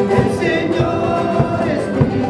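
A live band plays a Christian song: voices sing over strummed guitars, and a large wooden hide drum, struck with a stick, beats low and steady about every half second.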